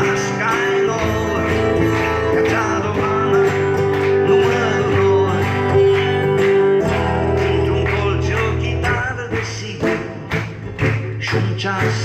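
Instrumental break in a live folk song: acoustic guitar strumming with held accompanying notes, and the audience clapping along to the beat. The low accompaniment drops out about nine seconds in, leaving the guitar and claps.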